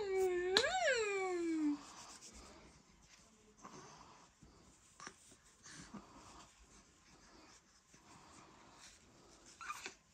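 A soft, high cooing voice that holds a note, swoops up and falls away over the first two seconds or so, then near quiet with faint soft rustles and taps of handling.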